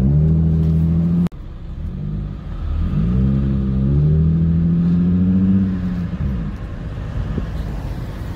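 Car engine heard from inside the cabin as the car drives off: a steady engine note, broken off abruptly about a second in. The engine then climbs in pitch as it accelerates, holds, and eases off near the end.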